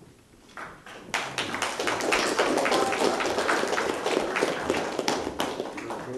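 Audience applause: many hands clapping, starting about half a second in, swelling quickly and dying away near the end.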